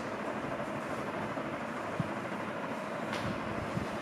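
Steady room noise, a hiss with a low rumble under it, with a couple of faint taps from a marker on the whiteboard.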